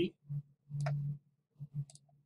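Two computer mouse clicks about a second apart, the second near the end, as a cell range is selected and a dialog button is clicked.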